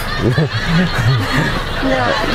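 A person chuckling softly, a few short laughs in a row.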